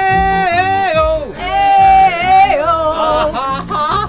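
Male voice singing long, held wordless notes into a microphone over a backing track with a steady low beat; the notes slide and bend in a yodel-like way.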